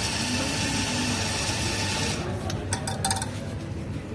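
Espresso grinder's motor grinding coffee into a portafilter, stopping about halfway through, followed by a few sharp metallic clicks and knocks as the portafilter is handled and pulled away from the grinder.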